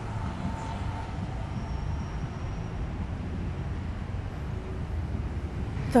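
Steady low rumble of city street ambience, like distant traffic, with no distinct events standing out.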